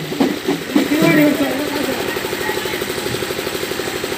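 Hand-held frame drums played in a fast, even roll, the strikes too quick to count, taking over after a brief bit of voice at the start.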